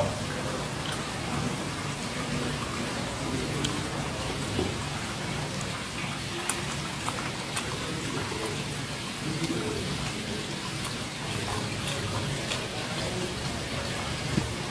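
Steady background hiss with faint, low murmuring voices and a scattering of light clicks.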